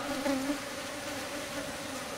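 Asian honey bees (Apis cerana indica) buzzing in flight, a steady hum from the disturbed colony. A deeper buzz close by fades about half a second in.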